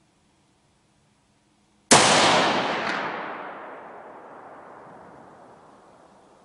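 A single shot from a Savage 12 FV rifle in 6.5 Creedmoor about two seconds in, a sharp crack followed by a long echo that dies away slowly over several seconds through the forest.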